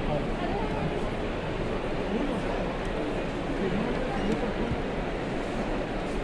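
Crowd chatter: many people talking at once in a packed hall, a steady babble with no single voice standing out.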